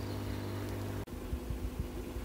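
Hozelock pond vacuum running with a steady hum. The hum cuts off abruptly about a second in, leaving a fainter steady noise with a few low knocks.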